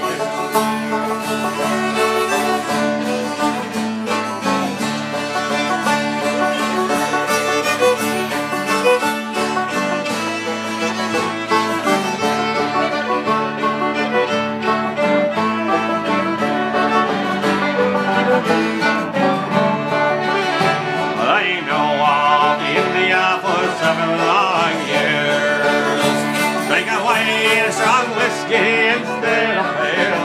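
Resonator banjo and fiddle playing an instrumental break together, the banjo picking a steady stream of notes. From about two-thirds of the way in, a high wavering, sliding fiddle line comes to the front.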